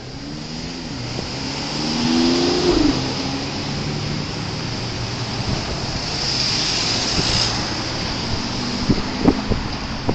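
Cars driving through an intersection close by. One car's engine revs up as it pulls away about two seconds in, and tyre noise swells later as cars pass near. A few sharp knocks come near the end.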